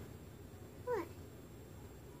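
A child's voice saying a single short "What?" with a falling pitch, about a second in, against quiet room tone.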